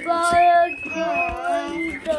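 A high voice singing two long held notes.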